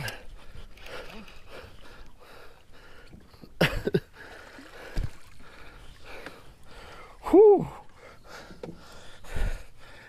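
Scattered knocks and thumps in a small aluminium fishing boat as a fish is brought into the landing net. About seven seconds in, a man gives a short wordless exclamation that rises and falls in pitch; it is the loudest sound.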